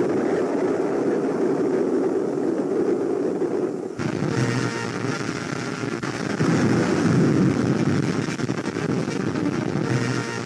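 Steady rumbling noise on an old film soundtrack. About four seconds in it turns brighter and fuller, and faint sustained tones join it.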